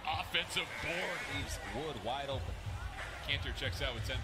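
Basketball game broadcast audio: a commentator's voice over court sounds, with a basketball bouncing on the hardwood.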